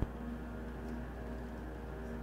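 A low, steady background hum with faint held tones coming and going over it, and a brief click right at the start.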